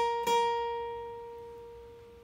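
Steel-string acoustic guitar, a single high lead note on the eleventh fret plucked twice in quick succession. It then rings out and slowly fades.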